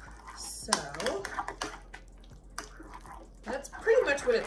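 A spoon stirring a thick, wet ricotta-cheese mixture in a ceramic bowl, with light clicks of the spoon against the bowl; a woman speaks briefly over it about a second in and again near the end.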